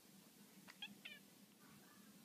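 Domestic cat giving two brief, faint meows close together about a second in, then a softer one near the end.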